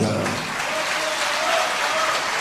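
A large seated audience clapping: steady applause from many hands, starting as the speech stops.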